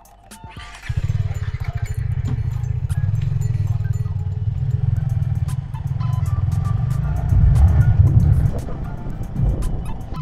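Yamaha R15 V3's 155 cc single-cylinder engine pulling away from a stop and riding on, a low pulsing drone mixed with wind on the helmet-mounted microphone. It starts about a second in and is loudest near the end.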